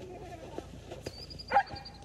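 A single loud dog bark about one and a half seconds in, over a thin high whistling tone held through the second half.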